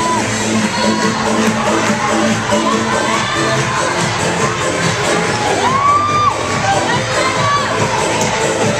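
A gym full of schoolchildren cheering and shouting, a constant din with high-pitched yells rising above it, one longer yell near six seconds in.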